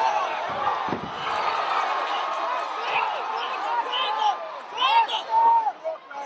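Spectators shouting at a cage fight, many voices overlapping, with one heavy thud about a second in.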